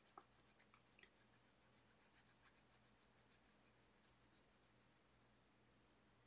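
Very faint strokes of a Bic Intensity fine-point permanent marker drawing on coloring-book paper: a scatter of short ticks that thin out and stop about three to four seconds in, over a low steady hum.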